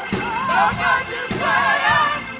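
Live gospel music: a wavering, ornamented sung line over organ and drum kit, with regular drum and cymbal strokes.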